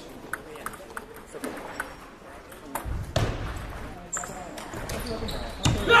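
Table tennis balls clicking off paddles and tables, sharp irregular ticks from rallies on many tables in a large gymnasium, with voices talking from about three seconds in and a louder voice near the end.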